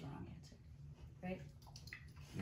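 Quiet room with a short, soft vocal sound from a person a little over a second in.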